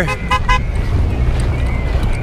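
Three quick toots of a vehicle horn, followed by the steady low rumble of passing traffic.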